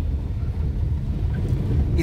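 Steady low rumble of a car heard from inside the cabin: engine and road noise on a rough, broken road.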